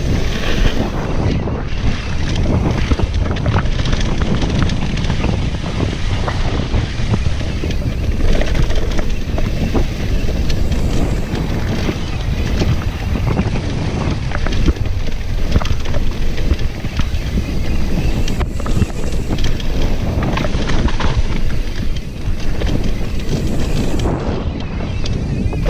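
Wind buffeting the camera microphone as a Jamis Defcon 1 enduro mountain bike is ridden fast downhill, with a continuous rumble of tyres on dirt. Many short clacks and rattles come from the bike as it runs over rough ground.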